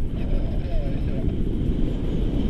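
Airflow from a tandem paraglider's flight buffeting the handheld camera's microphone: a continuous low rumble.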